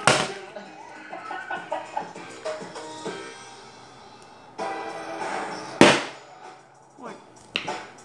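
A partly filled plastic water bottle knocking down onto a wooden table during bottle flips: a sharp knock at the start, a louder one about six seconds in, and a smaller one near the end, over background music and voices.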